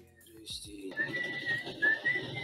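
A single high whistled note starts about a second in and holds steady, with slight wavers in pitch.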